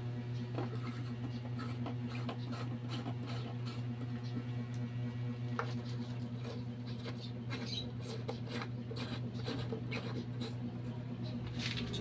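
Light bulbs being screwed into porcelain lampholders: scattered faint clicks and scrapes as the bulb bases turn in the sockets, over a steady low hum.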